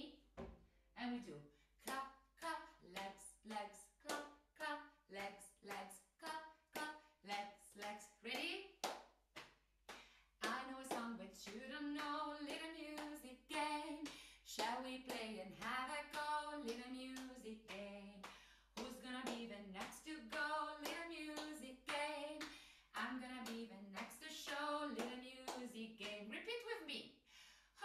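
Body percussion, hand claps and slaps on the body in a steady beat, with a woman's voice singing along. For the first ten seconds or so the voice comes in short notes between the claps. After that the singing runs on in longer phrases over the beat.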